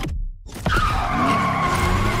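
Car tyres screeching in a skid: after a brief drop-out, a loud squeal with a wavering, slowly falling pitch starts suddenly about half a second in and holds.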